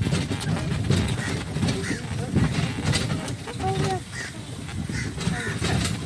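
Horse-drawn carriage rolling along, a steady low rumble with irregular knocks and clatter from the ride, with voices in the background.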